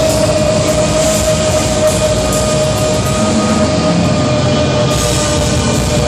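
Black metal band playing live: a dense wall of distorted guitars and drums with one long held high note over it. The cymbals and kick drum briefly drop out past the middle.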